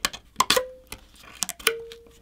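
Knife blade cutting into the thin copper sheet of a phone's vapor chamber: several sharp metallic clicks, two of them followed by a brief ringing tone.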